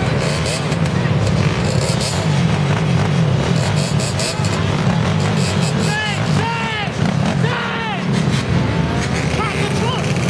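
Dirt bike and ATV engines running close by, with quick throttle revs that rise and fall in pitch several times past the middle. Voices of the crowd mix in.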